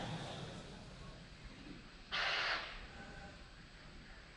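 A short breathy hiss lasting about half a second, about two seconds in, over a faint steady background.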